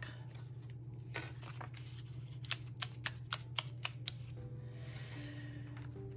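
A paper page being pressed back onto the discs of a discbound planner: a run of six or seven sharp clicks as its punched edge snaps onto the discs, over a low steady hum. Soft background music fades in near the end.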